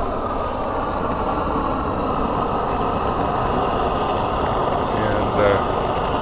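Propane burner firing a small fiber-lined kiln: a steady, even rushing noise of gas and flame.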